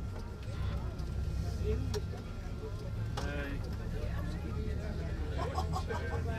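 Steady low rumble of a moving vehicle's engine and tyres heard from inside the cabin, with people's voices talking indistinctly in the background.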